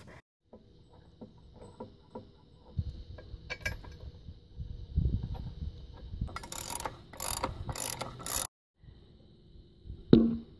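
Hand tools working on the bolts of a steel bracket on a tractor frame: a ratchet wrench clicking in short runs, mostly in the second half, with a few low knocks.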